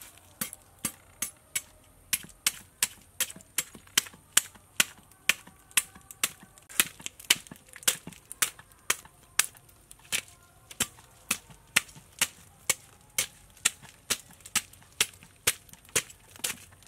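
Metal fish scaler scraped in quick, repeated strokes along a large fish's scales. Each stroke is a sharp crackling scrape, about two to three a second.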